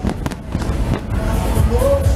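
Aerial fireworks crackling and popping, mixed with loud bar music with a heavy bass. A few sharp cracks come in the first half second while the music dips, then the music comes back strongly.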